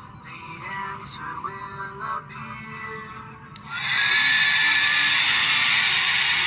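Soft cartoon soundtrack music played back through a computer speaker. About three and a half seconds in, a loud steady hiss with a faint high whistle in it cuts in and carries on.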